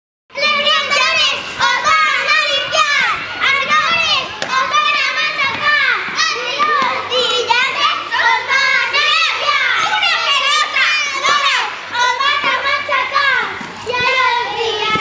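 Many children shouting, calling and chattering at once while playing games, a dense babble of overlapping high voices that starts abruptly just after the beginning.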